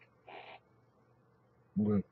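A man's wordless vocal sounds made while signing in American Sign Language: a short breathy sound about a quarter second in, then a brief low voiced hum near the end.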